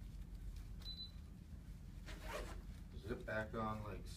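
A waterproof YKK zipper being worked along the edge of a Cordura motorcycle pant's vent panel to zip it back on, in short zipping strokes with the loudest rasp about two seconds in. A man's voice murmurs briefly near the end.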